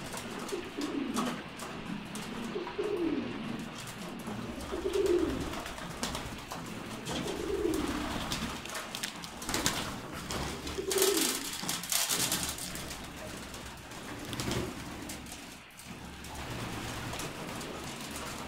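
Domestic pigeons cooing over and over, low falling coos every second or two. Their beaks click as they peck chickpeas from a metal tray, and there is a brief rustling burst about eleven seconds in.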